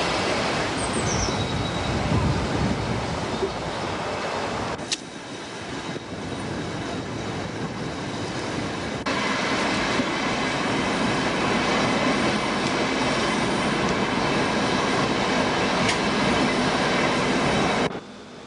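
Berlin S-Bahn class 480 electric multiple unit running on the rails: steady wheel and rail running noise. The sound shifts abruptly about five seconds in and again near the middle, as the view moves from the passing train to the driver's cab.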